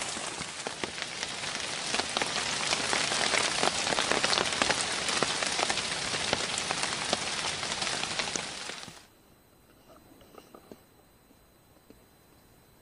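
Rain falling on wet forest foliage: a dense, even hiss made of many small drop impacts. It cuts off suddenly about nine seconds in, leaving a much quieter background with a few faint ticks.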